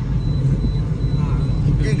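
Steady low rumble of engine and road noise inside the cabin of a moving car, with a man starting to speak near the end.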